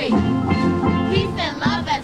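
High-school steel drum band playing held, ringing steel pan notes, with the cheer squad's chanting voices coming back in near the end.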